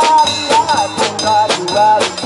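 Live band playing an instrumental passage: a drum kit beating about two strokes a second under guitar, with a melody line bending in pitch over it.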